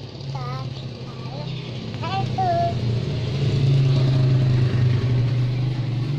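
A motor vehicle engine running steadily as a low hum, growing louder over the first three seconds and then holding, with a few short high-pitched child's vocal sounds over it in the first half.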